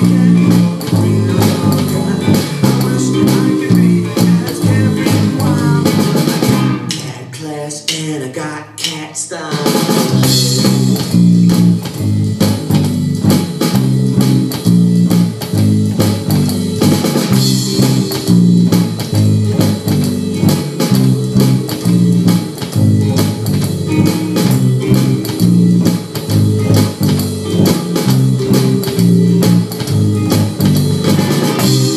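Electric bass and an electronic drum kit playing a steady groove together, the bass repeating a pattern of low notes under the drum beat. About a quarter of the way in the bass drops out for a few seconds, then comes back in.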